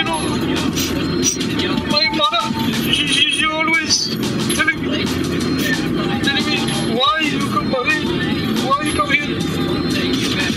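Indistinct voices with short rising and falling pitch glides over background music and a steady low rumble.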